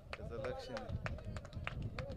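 Brief speech over a steady low rumble, with scattered light clicks throughout.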